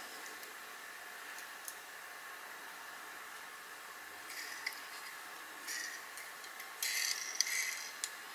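Motorised display turntable running with a faint, steady whine, with a few soft rustles in the second half.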